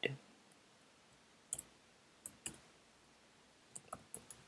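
Faint, scattered keystrokes on a computer keyboard: about half a dozen separate clicks, with a couple in quick pairs.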